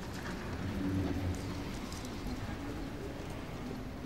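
Pigeon cooing in two low phrases over a steady background hiss, with faint scattered ticks.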